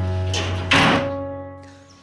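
A door shut with a thud a little under a second in, over a held music chord that slowly fades away.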